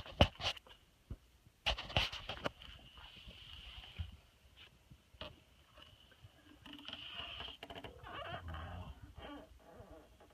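Handling noise from an electric guitar and its hardshell case: two clusters of sharp clicks and knocks in the first couple of seconds, then softer rustling and bumping. A faint high whine sounds along with them at times.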